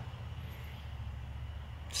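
A pause with only a low, steady background hum and faint room noise.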